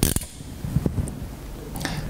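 Hand crimping tool clicking as it squeezes a bullet connector onto a wire: one sharp click at the start, a few lighter clicks about a second in, and more clicks near the end.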